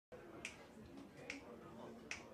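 Two sharp finger snaps at an even pulse, a little more than one a second, over a faint low murmur.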